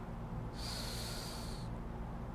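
A single breath drawn through the nose, lasting about a second, over a low steady room hum, as someone pauses to think mid-sentence.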